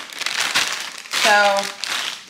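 Bag or packaging crinkling as it is handled. A short vocal sound comes about a second in.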